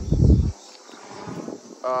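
A brief, loud low rumble on the microphone in the first half-second, then a much quieter stretch with faint crickets chirping in the background.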